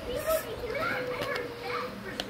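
A child's voice holding one long hummed or sung note, wavering in pitch near the start and then steady.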